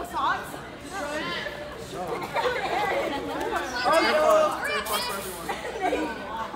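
Several people chattering at once in a large room, their voices overlapping with no clear words.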